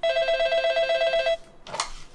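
Desk telephone's electronic ringer warbling rapidly between two tones for about a second and a half, then cutting off. A short clatter follows as the handset is lifted.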